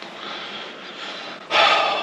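A man's heavy sigh of frustration: a long breath drawn in, then a loud, noisy breath out about one and a half seconds in.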